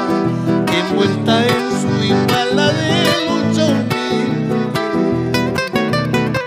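Instrumental interlude of an Andean song: strummed and picked acoustic guitars with mandolin and accordion, played steadily.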